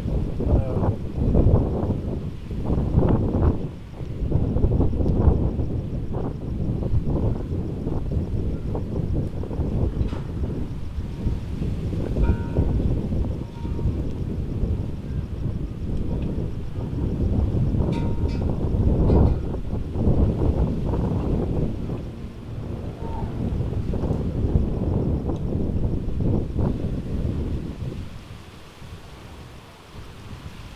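Heavy wind gusting against the microphone: a low, rumbling rush that swells and drops every few seconds and eases off near the end.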